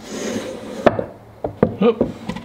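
Plywood drawer sliding and rubbing against the wooden supports in its opening, then a few sharp wooden knocks. The fit is a little too tight, enough that the supports need shaving down.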